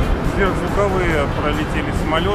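A voice speaking over quieter background music, starting about half a second in.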